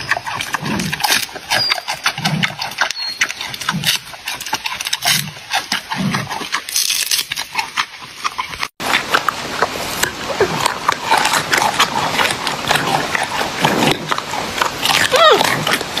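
Giant panda eating a bamboo shoot: crisp crunching and snapping as it bites, with wet chewing between bites about every second or so. About nine seconds in the sound cuts to another clip, with more crunching and chewing over a noisier background and a brief sliding squeak near the end.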